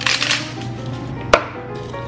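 Plastic lid of an oats canister being handled and pulled off: a short rustle, then a single sharp click about a second and a half in. Quiet background music plays underneath.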